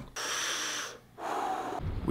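A man breathing out hard twice, first a high hiss and then a lower, shorter huff, reacting to a strong sip of cold brew coffee.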